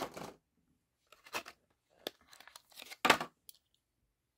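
Clear plastic blister packaging of a 1:64 diecast car being pulled open and torn. A few short crinkles and tearing sounds come between about one and three seconds in, then one sharp crackle, the loudest, just after three seconds.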